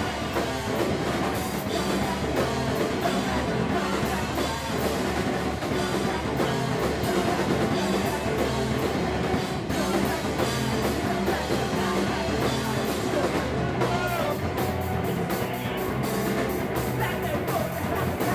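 Live rock band playing: distorted electric guitars over a drum kit, with a singer.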